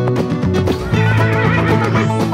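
Upbeat country-style background music, with a horse whinny in it from about a second in.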